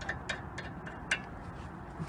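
About four light metallic clicks from handling the brake caliper's slider bolt, spread over the first second or so, over a low steady background noise.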